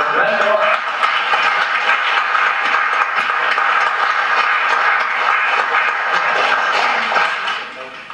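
Audience applauding steadily, the applause dying away near the end.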